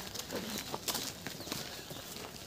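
Footsteps of a small group walking on a village lane: irregular soft scuffs and taps, with faint voices in the background.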